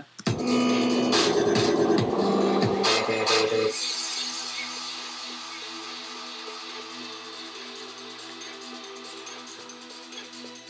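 Dubstep track playing back from Ableton Live. A dense, loud passage with heavy bass and drums cuts off about three and a half seconds in, leaving sustained synth chords that slowly fade.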